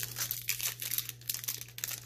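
Crinkling of a booster pack wrapper being handled and torn open by hand: a dense, irregular crackle.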